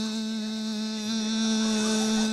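A man's voice imitating a cassette tape rewinding: one long, steady, buzzing 'zzzz' held on a single pitch.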